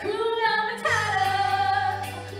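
Young cast members singing long held notes over backing music, with a steady low bass note coming in about a second in.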